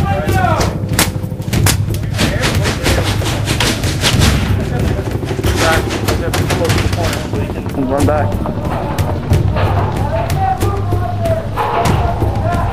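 Paintball markers firing many quick shots, over music and voices.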